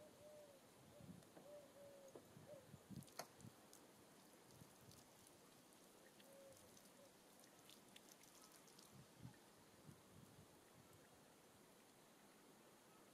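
Near silence: faint outdoor ambience with some faint short calls in the first couple of seconds and again about halfway, and a few soft clicks, the clearest about three seconds in.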